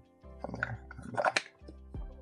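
Background music, with light clicks and rubbing from the wooden Karakuri Kuru Kuru Heart puzzle box as its pieces are handled and slid back into place, clustered from about half a second to a second and a half in.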